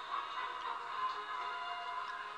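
Background music with steady, sustained tones.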